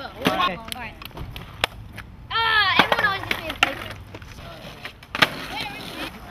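Skateboard on asphalt: wheels rolling with a low rumble and a series of sharp clacks from the board, the loudest about five seconds in.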